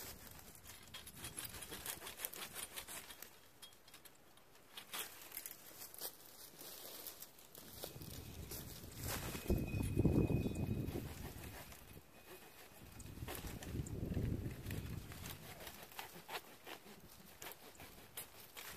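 Dry maesil branches clicking and crackling as they are handled and cut during pruning. Low rumbles of wind on the microphone come twice near the middle and are the loudest part.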